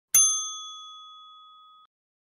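A single bright bell 'ding' sound effect for the clicked notification-bell icon. It strikes once, rings at a few clear high pitches and fades, then cuts off suddenly near the end.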